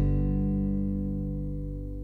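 Background music: a guitar chord ringing on and slowly fading away.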